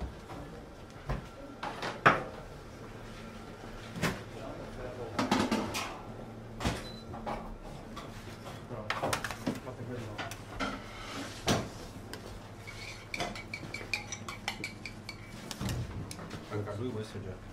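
Metal kitchen utensils and stainless steel trays clinking and knocking against each other and the counter, in scattered strikes, the sharpest about two seconds in.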